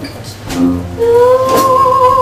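Live small jazz band with a woman singing. After a short lull, she holds one long steady note from about a second in, over sousaphone and a light beat.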